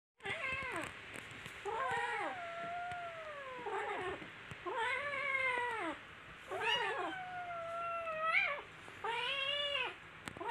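Kittens yowling at each other while squaring off in a play-fight: about five long, wavering calls that rise and fall in pitch, the longest drawn out for over two seconds.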